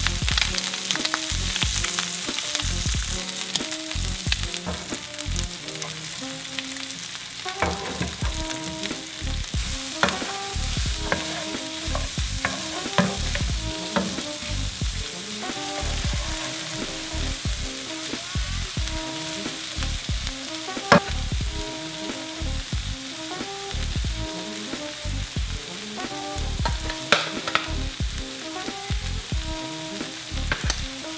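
Diced bacon, cherry tomatoes and red onion sizzling in a nonstick frying pan, with a wooden spatula stirring and knocking against the pan many times, one knock much louder about twenty seconds in.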